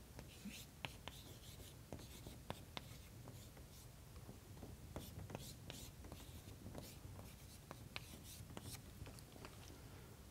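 Chalk writing on a blackboard, faint: short scratches and irregular sharp taps of the chalk against the board.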